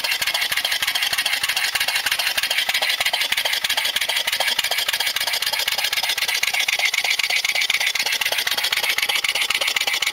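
Briggs & Stratton 3.5 hp lawnmower engine converted to run on compressed air, its camshaft modified to remove compression, running steadily on a little under 20 psi of air. It gives a rapid, even pulsing of air hiss, one puff per exhaust stroke, without a break.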